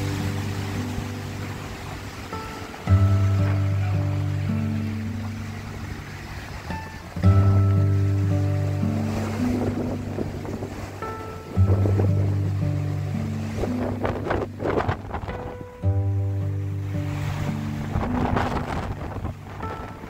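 Solo guitar music laid over the picture: a slow, chordal piece with a new chord struck about every four seconds and left to ring. Under it is wind buffeting the microphone and the rush of the sea, which comes up strongly in the second half.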